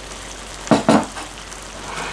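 Chicken and baked beans sizzling steadily in a frying pan, with two short scrapes a little under a second in.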